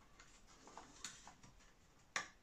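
Near silence with a few faint light clicks, the clearest about a second in, as a steel wire pushrod and its clevis are handled.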